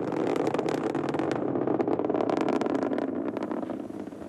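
Ariane 5 rocket climbing after liftoff: the steady roar of its main engine and solid boosters, full of dense crackle.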